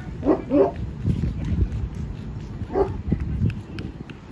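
Dog barking: two quick barks less than a second in, then a single bark near the end.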